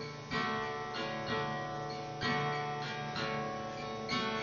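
Acoustic guitar played on its own between sung lines: a few soft strummed chords, each left to ring.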